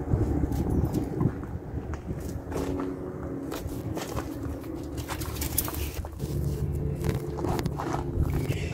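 A steady low mechanical hum, with scattered light knocks and footsteps.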